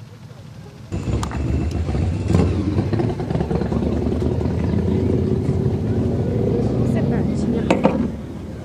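Motorcycle engines running, loud and steady, coming in suddenly about a second in, with people talking over them.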